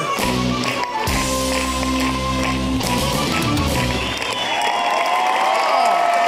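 Live rock band holding its final chord, which cuts off about four seconds in; audience cheering and yelling follows.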